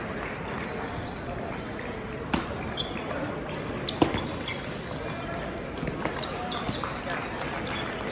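A few sharp ticks of a table tennis ball bouncing, the loudest about four seconds in, over the constant chatter of many people in a large hall.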